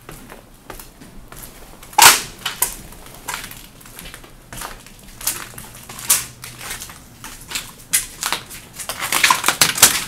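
Footsteps crunching on debris and broken material strewn across a floor, in irregular steps. The loudest crunch comes about two seconds in, and a quick run of crunches comes near the end.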